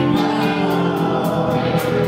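Live band playing a song: voices holding long sung notes over electric guitar, keyboard and drums, with cymbal hits through it.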